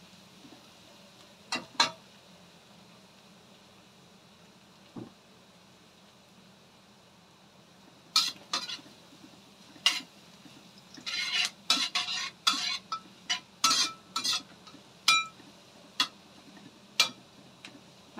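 A metal spatula scraping and clinking against a stainless steel wok while ginger strips are stir-fried in hot oil, over a faint sizzle. There are a few strokes near the start and then little for several seconds; from about halfway on the scraping strokes come thick and fast.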